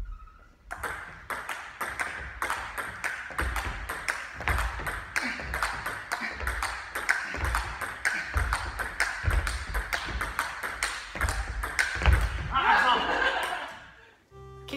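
Table tennis ball clicking back and forth between paddles and table in a long, fast rally: a steady run of sharp clicks. A voice breaks in near the end.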